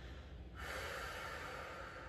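A woman's ujjayi breathing: slow, audible breath drawn through the nose with the throat slightly narrowed, paced to a count of four. One long breath begins about half a second in and continues as a steady hiss.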